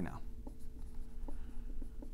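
Marker writing on a whiteboard: a few soft taps and strokes over a faint steady hum.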